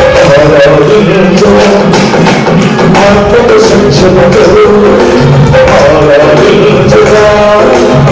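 Men singing a Christian worship song into microphones over amplified instrumental accompaniment with a steady percussion beat.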